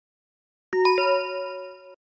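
A bell-like chime sound effect: three quick struck notes about a second in, ringing together and fading over about a second.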